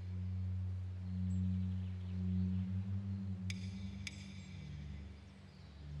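Dramatic background score: a low, sustained string drone that shifts to a higher note near the end, with two bright ringing chime strikes a little past halfway.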